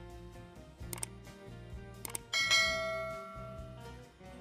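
Background music with two sharp mouse-click sound effects, then a bell chime about two seconds in that rings and fades over a second and a half: the click-and-bell sound effects of a subscribe-button animation.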